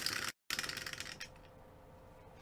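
Dice rattling and clicking against the inside of a clear plastic dice-popper dome after it is pressed. The clatter dies away over about a second as the dice settle.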